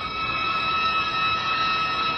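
A steady, high-pitched electronic alarm tone sounding without a break.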